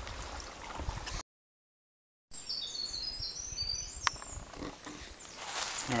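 A faint trickle of a small spring, broken by about a second of dead silence at an edit. After it comes quiet woodland background with a few brief high bird chirps, and a single sharp click about four seconds in.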